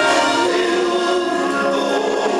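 Live band music with several voices singing together, holding long sustained notes.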